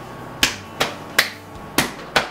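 One person clapping hands: four sharp single claps at a steady, beat-like pace of about two to three a second.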